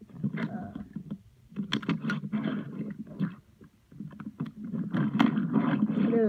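Die-cast toy cars being rolled and pushed by hand across a wooden floor: a low rumble of small wheels in several spells, with sharp clicks and knocks as the cars are picked up and set down.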